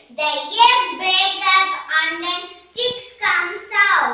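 A young girl singing unaccompanied in short phrases with held notes.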